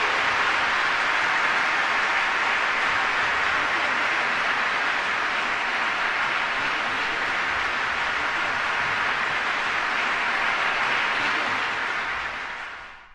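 Large concert-hall audience applauding: dense, steady clapping.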